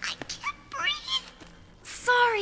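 A high-pitched cartoon character voice making short, wordless, meow-like whimpers that rise and fall in pitch. A brief hiss comes near the end.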